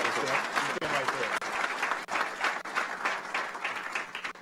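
Audience applauding, with a man talking under it near the podium microphone; the applause thins out toward the end.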